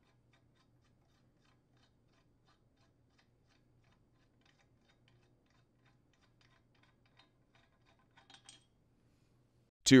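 Faint, sparse metallic clicks and ticks as the steel impeller removal tool is turned by hand and unthreaded from the impeller's center bolt hole, a little louder toward the end, over a faint low hum.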